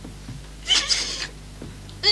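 A woman's brief, high-pitched, strained whining cry, about a second in, in distress.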